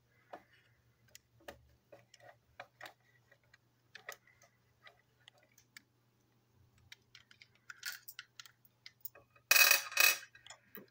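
Hard plastic parts of a toy train engine clicking and tapping as they are handled and taken apart, in scattered irregular ticks, with a louder clatter near the end.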